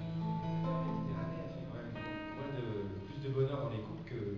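Two acoustic guitars playing live, strummed and plucked, with sustained notes ringing.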